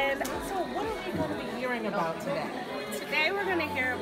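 People talking: speech and chatter in a large room, with no other sound standing out.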